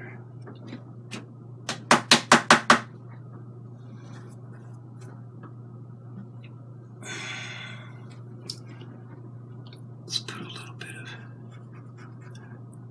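A paintbrush being cleaned: a quick run of about six sharp raps about two seconds in as the brush is knocked against a hard edge. A short rustle follows a little past the middle, then a couple of single light taps, all over a steady low hum.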